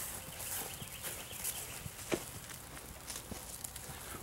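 Footsteps on grass as a person walks away, with scattered faint clicks and one sharper knock about two seconds in, over outdoor background noise.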